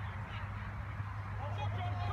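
Soccer players' distant shouts and calls, faint, over a steady low hum.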